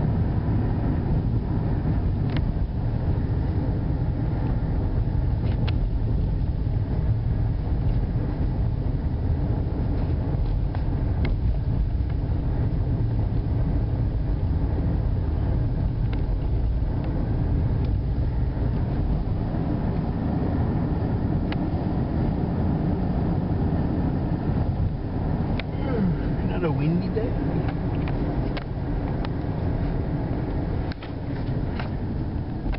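Road and engine noise inside a moving car, a steady low rumble. A short wavering voice-like sound comes in about 26 seconds in.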